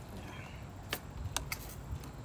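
A few light clicks and taps of hands handling parts, three of them close together a second or so in, over a low steady background rumble.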